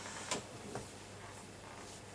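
Low room hiss with two soft clicks in the first second.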